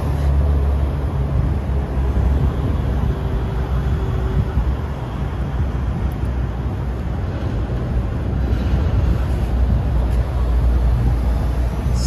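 Steady low rumble of background noise, strongest in the deepest range and uneven in level.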